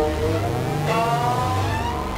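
Electronic music: a deep bass tone swells and glides up in pitch, then sinks back near the end, under several sustained tones sliding slowly upward.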